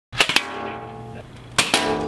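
Toy Nerf blasters firing: two quick pairs of sharp clicks, one just after the start and one about a second and a half in. Each pair is followed by a held musical chord that rings on and fades.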